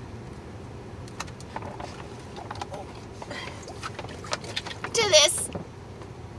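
Soft crinkling and handling of a collapsible plastic water bag: faint scattered ticks over a low, steady background, with a short vocal sound about five seconds in.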